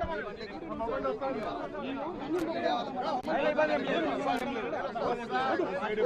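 A crowd of people talking over one another: loud, overlapping chatter.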